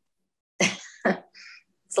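A man coughs twice, about half a second apart, followed by a short, softer breathy sound.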